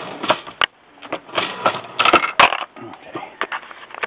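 Lee Pro 1000 progressive reloading press being cycled by its handle: irregular metallic clacking and rattling of the ram, shell plate and case carrier as a round is loaded, with a cluster of the sharpest clicks about two seconds in.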